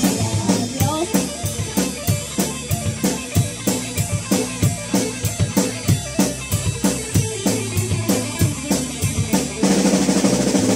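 A children's rock band plays a heavy metal cover, the drum kit driving a fast, even beat of kick and snare at about four hits a second under the guitars.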